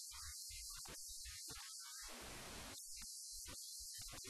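Faint recording noise: a steady high hiss under a low electrical hum that cuts in and out in choppy patches.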